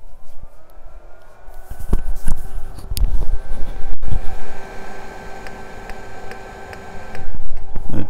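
A late-80s 286 suitcase computer powering on: an electronic whine rises in pitch over the first second or so, then holds steady with a steady hum under it. Low thumps from handling come about two to four seconds in.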